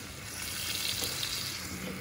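Tomato and passata sizzling in hot oil in an enamel pan as a wooden spoon stirs them, the sizzle growing louder about half a second in.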